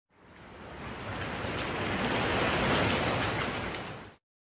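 A rushing whoosh swells up over about two and a half seconds, then fades away near the end, like a surf or wind sound effect used as an intro.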